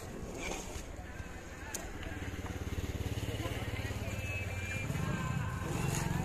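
A motor vehicle's engine running close by, getting louder from about two seconds in and holding a steady hum toward the end.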